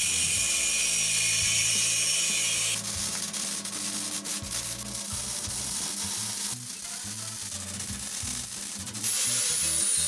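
Angle grinder cutting steel with a loud hissing grind for the first few seconds, then the crackle of arc welding on the steel frame. Near the end the grinder starts again with a high, steady whine.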